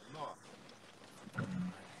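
A pause in a man's speech: faint hiss with two brief, faint voice sounds, the second a short held hum about a second and a half in.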